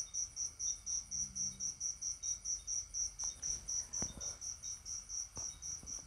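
Faint, steady insect chirping: a high-pitched pulse repeating evenly about four times a second, with a few faint clicks.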